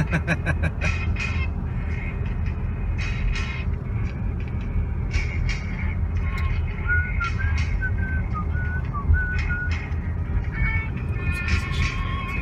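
Steady low rumble of a truck driving on the highway, heard from inside the cab, with a person whistling a few wavering notes in the middle of it after a laugh at the start.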